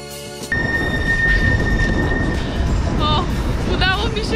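Music cuts off about half a second in, giving way to loud street noise beside a tram: wind buffeting the microphone and the rumble of a tram, with a steady high squeal for about two seconds. A woman's voice comes in near the end.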